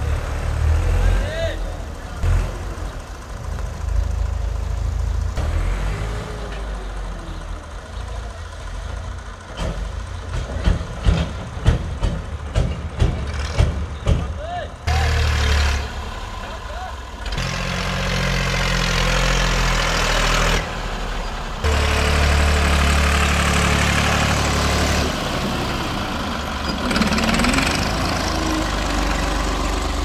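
Tractor's diesel engine running under load as its front loader blade pushes loose soil, with a quick run of sharp knocks and clatters in the middle.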